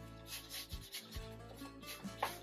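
Wide flat brush scrubbing a thin oil glaze onto a canvas: a dry, rasping rub repeated in several quick strokes.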